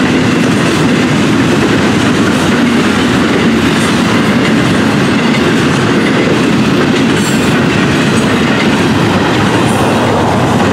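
Double-stack intermodal freight cars rolling past at close range: a loud, steady rumble and rattle of steel wheels on the rails that holds even throughout.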